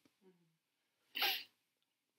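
A man's single short, sharp breath, about a second into an otherwise quiet pause.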